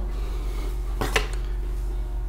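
A short tap about a second in, as a sheet of white card is laid on a wooden table, over a steady low hum.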